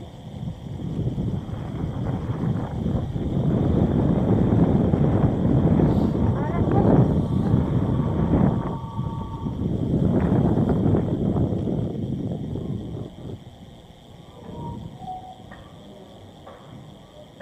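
Wind buffeting the microphone of a moving bike-mounted camera: a low, rough rumble that swells twice, then dies down near the end as the ride slows.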